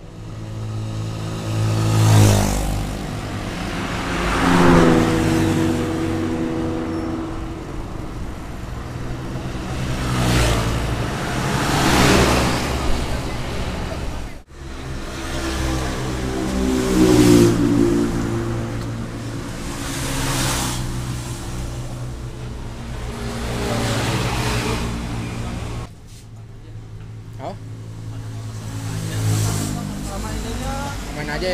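Road traffic: vehicles passing one after another every few seconds, each swelling and fading, over a steady low hum. The sound breaks off abruptly twice.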